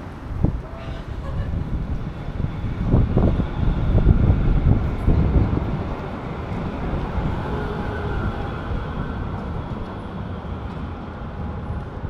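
A city tram running past close by on street rails, a low rumble that builds to its loudest a few seconds in and then eases off, over general traffic noise.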